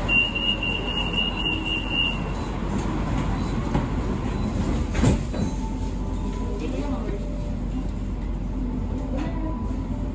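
Bangkok BTS Skytrain train sounds: a steady high electronic beep lasting about two seconds at the start, a sharp knock about halfway through, then the train running with a continuous rumble and a faint shifting motor whine.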